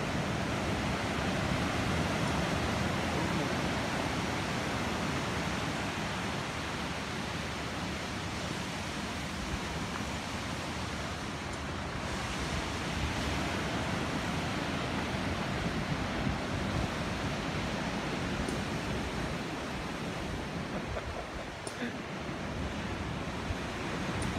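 Sea surf breaking on the rocks at the foot of a cliff, a steady wash, mixed with wind.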